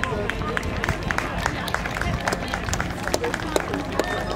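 Scattered hand-clapping from spectators, a few irregular claps a second, over outdoor crowd chatter.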